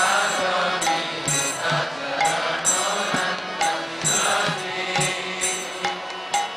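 Devotional kirtan music between sung lines: small hand cymbals striking in a steady rhythm, about two strikes a second, over a held drone.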